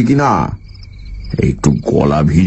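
Crickets chirping steadily, a fast even trill, heard in a short gap between stretches of a man's narration in Bengali.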